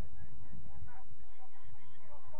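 Steady low rumble of wind on the microphone, with faint, short, rising and falling calls in the background from about a second in.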